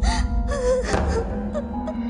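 Film background music with held notes, over a woman sobbing in gasping breaths.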